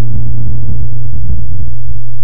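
A loud, steady low hum with a rumble beneath it, held without change.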